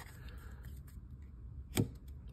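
Faint rustle of baseball cards being handled and stacked on a tabletop, with one sharp tap near the end as cards are set down.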